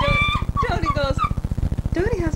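A dog whining: one held high note, then wavering, falling cries. A steady low buzz runs underneath.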